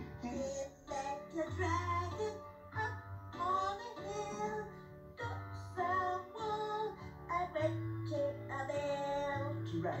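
A children's song: a high sung voice carrying a melody over a bass line that moves in long, steady notes.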